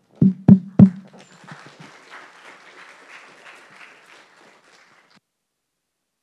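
Three heavy thumps on a headset microphone as it is handled and pulled off, within the first second. A softer, noisy rustle follows and cuts off suddenly about five seconds in.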